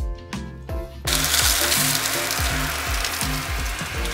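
Background music; from about a second in, beef burger patties sizzle steadily as they fry in a pan.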